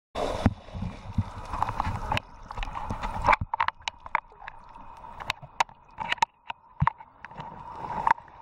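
Shallow water lapping and sloshing close to the microphone, with small splashes and ticks of water. A heavier low rumbling noise fills the first three seconds or so, then only the scattered little water sounds remain.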